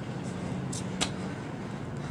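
A man doing a burpee on a concrete driveway, getting up from the ground, with a single sharp slap on the concrete about a second in. A steady low hum runs underneath.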